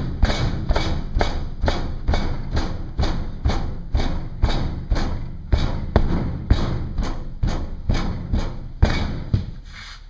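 A hand rammer pounding oil-bonded casting sand (Petrobond) into a wooden flask, packing the mold: a steady run of quick thuds that stops shortly before the end.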